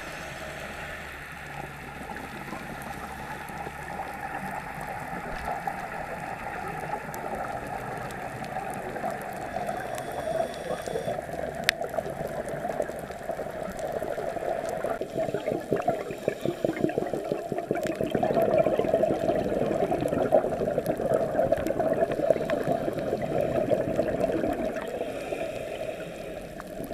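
Scuba regulator exhaust bubbles gurgling and crackling underwater, steady and growing louder through the second half.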